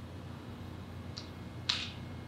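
Steady low room hum with two short, soft clicks, one just over a second in and a louder one near the end.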